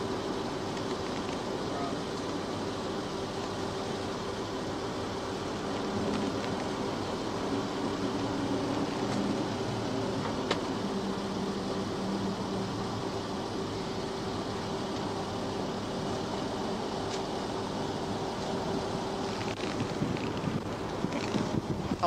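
Steady roadside hiss and hum on a police dash-camera recording, with one steady low tone. It grows louder near the end as another car approaches on the road.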